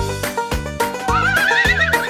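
Children's song backing music with a steady beat. About a second in, a cartoon horse whinny, a quivering high call, plays over it.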